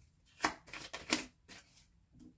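A deck of tarot cards being handled and shuffled by hand. There is a sharp card snap about half a second in, several quicker card sounds around a second in, and a softer one near the end.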